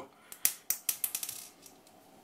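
A quick run of light, sharp clicks and taps as hands handle an airsoft pistol and the small screws for fitting its sight adaptor plate; they fall in the first second and a bit, then die away.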